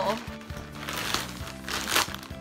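A plastic poly mailer bag crinkling and crackling as it is handled and pulled open, with a few sharper crackles. Soft background music plays under it.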